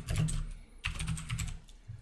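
Typing on a computer keyboard: a quick run of key clicks that stops about one and a half seconds in.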